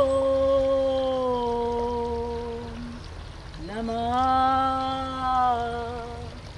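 A voice chanting a mantra in long held notes: the first note sinks slowly in pitch and fades about halfway through, and after a short break a second note slides up and is held.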